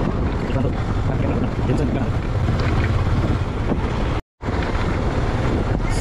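Wind buffeting the microphone over the steady low hum of a moving motorcycle's engine and road noise. The sound cuts out completely for a split second about four seconds in.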